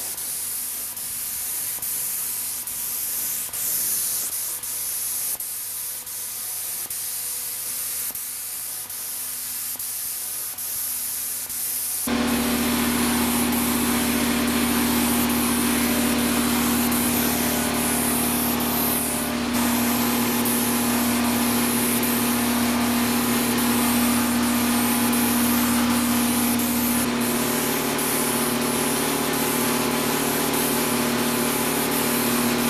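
Gravity-feed spray gun hissing with compressed air as it sprays paint onto a car bumper. About twelve seconds in, a steady low motor hum joins the hiss and stays.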